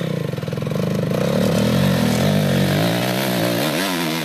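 Dirt bike engine revving hard under load as it climbs a steep, loose rocky slope; the pitch rises at first, then wavers up and down, bouncing quickly near the end.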